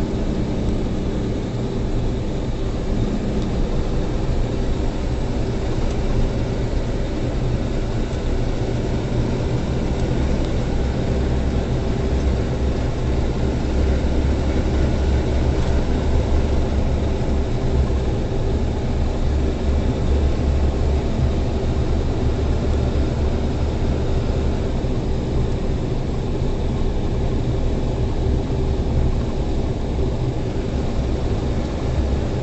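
Semi truck's diesel engine running at highway speed, heard from inside the cab as a steady low drone with road noise. The drone grows stronger from about eight seconds in until near the end.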